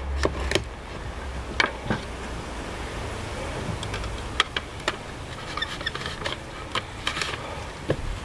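Kitchen knife cutting through peeled tromboncino squash onto a wooden chopping board: a few sharp knocks in the first two seconds. Scattered taps and knocks follow as a plastic mandoline and squash are handled, over a steady low background rumble.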